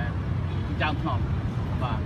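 A man speaking in short phrases over a steady low rumble.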